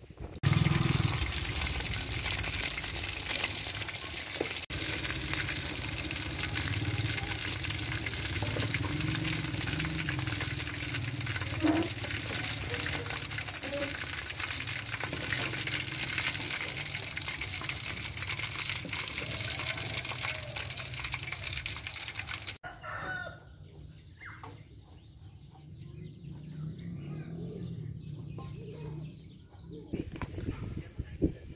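Noodle-wrapped pork balls deep-frying in a wok of hot oil: a steady, loud sizzle that cuts off suddenly about 23 seconds in, leaving it much quieter.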